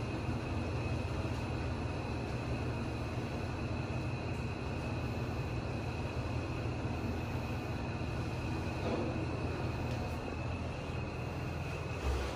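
Otis Gen2 machine-room-less lift car travelling down between floors, heard from inside the car: a steady low rumble of the ride with a thin, constant high-pitched whine over it.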